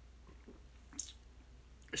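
A man sipping tea from a mug: quiet mouth and swallowing sounds, with one short, sharp mouth sound about a second in.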